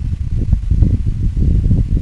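Wind buffeting an outdoor microphone: a loud, irregular low rumble.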